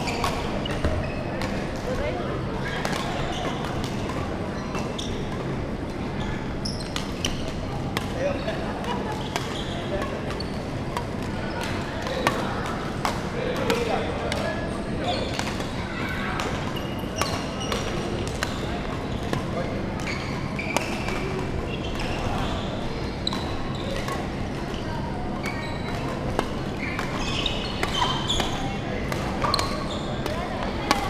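Badminton rallies: many sharp clicks of rackets hitting the shuttlecock, with thuds of players' feet on the wooden court floor, over a steady background of voices in a large hall.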